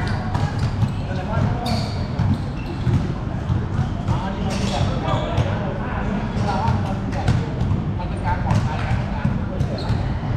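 Basketballs bouncing on a hard court during a pickup game, with players' voices calling out over a steady low rumble.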